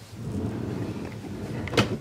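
A glass-fronted wardrobe drawer sliding shut on its runners, a low rumble that ends in a sharp knock near the end as it closes.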